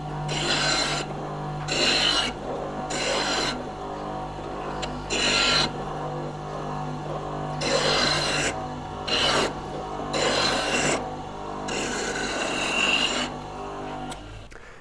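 Bench grinder running with a steady motor hum while a high-speed steel turning gouge in a sharpening jig is rolled back and forth against its 120-grit wheel. Each pass gives a rasping grind, about eight in all at uneven spacing. The grinding is putting a single clean bevel on the gouge.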